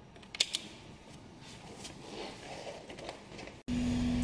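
Light handling noise with a few small sharp clicks from a digital multimeter and its test leads being handled, one click plainly louder about half a second in. A little before the end this switches abruptly to a steady, even hum over a low rumble.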